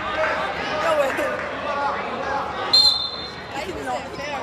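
Chatter of spectators in a gym, with one short, shrill referee's whistle blast nearly three seconds in.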